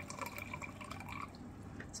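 Faint dripping and trickling of liquid as a glass bowl is tilted over a mesh sieve, straining crystal-growing solution off loose crystals.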